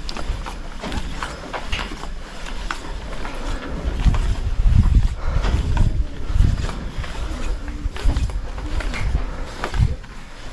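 Wind buffeting the microphone in gusts, heaviest in the second half, with scattered knocks from footsteps on a steel grate walkway.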